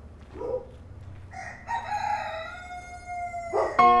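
A rooster crowing once: one long call of a bit over two seconds whose last note is held and slides down, after a shorter call near the start. Plucked music comes in just before the end.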